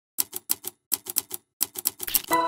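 Typewriter keystroke sound effect: quick, sharp key clicks in three short runs with brief silences between them.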